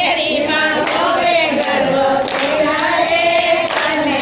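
A group of women singing a Gujarati devotional song together, unaccompanied, with a few sharp hand claps marking the beat.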